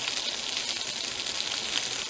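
Burgers sizzling on a wire grill over an open wood fire, with the fire crackling. It makes a steady hiss with fine crackles.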